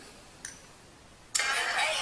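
Music starting suddenly from a smartphone's loudspeaker about a second and a half in, after a near-quiet stretch with one faint click.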